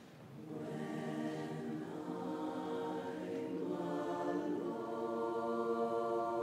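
Women's barbershop chorus singing a cappella in close harmony. After a brief pause the voices come in about half a second in with held chords that grow gradually louder.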